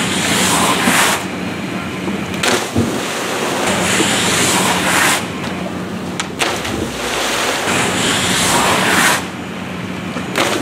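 Rushing noise of pool water and wind buffeting the microphone, swelling and easing several times, over a steady low hum.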